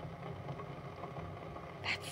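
Quiet room tone with a steady low hum, and a word of speech starting near the end.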